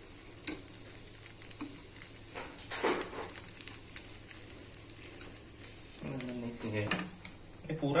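Appe batter dumplings sizzling steadily in an oiled appe pan over a medium gas flame. A fork clicks and scrapes against the pan as the dumplings are turned over in their cups, with a cluster of clicks around three seconds in.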